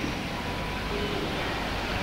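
Steady hiss of background noise from an old analogue recording in a pause between spoken sentences, with a faint thin steady tone under it.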